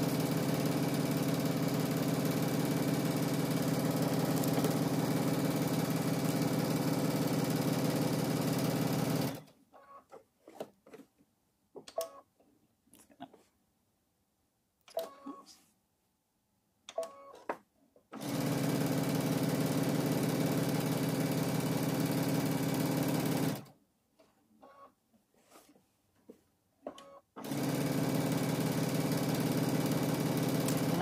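Baby Lock Altair 2 computerized sewing machine stitching a seam on quilt fabric at a steady speed. It runs in three stretches, stopping for several seconds twice, with a few light clicks in the pauses as the fabric is turned.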